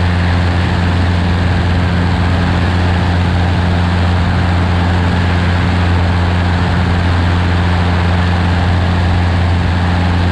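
Cessna 150's four-cylinder Continental O-200 engine and propeller droning steadily in cruise flight. It is heard from a camera mounted outside the cabin, with wind rushing over it.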